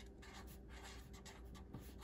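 Felt-tip marker writing on construction paper: faint, irregular scratching strokes as letters are drawn.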